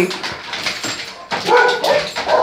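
A dog vocalising about one and a half seconds in with a short, rough whine-like bark, after a second of clicks and rustling.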